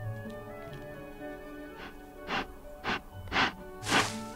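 Ethiopian wolf blowing sharp puffs of air down a rodent burrow to flush a grass rat to the surface: five puffs about half a second apart, starting about two seconds in and growing louder, the last the loudest. Background music plays throughout.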